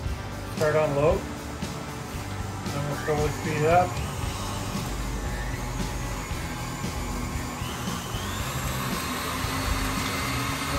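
Electric stand mixer with a wire whisk beating a cream cheese glaze: a steady motor whir whose whine rises in pitch about eight seconds in. Two short wordless vocal sounds come about a second and three seconds in.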